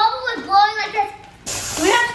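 Children's voices exclaiming, without clear words, then a short burst of hissing noise about one and a half seconds in.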